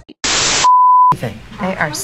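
TV-static hiss used as an edit transition: a loud burst of even white noise about half a second long. It is followed by a steady high beep of about half a second, then speech begins.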